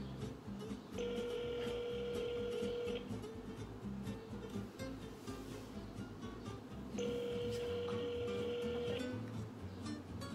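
Telephone ringback tone through a phone's speaker: two rings of about two seconds each, one about a second in and the next six seconds later, the sign that the called line is ringing unanswered.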